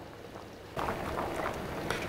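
Steel pot of maize and tiger nuts simmering on the hob, a steady bubbling hiss that starts suddenly about three-quarters of a second in, with a light clink from a spoon stirring in the pot near the end.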